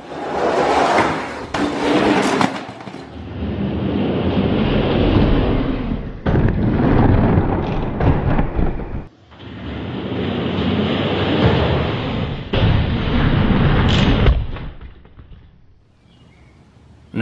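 Die-cast toy monster trucks rolling down an orange plastic racetrack: a loud rattling rumble of plastic wheels on the track, in several stretches that start and stop abruptly.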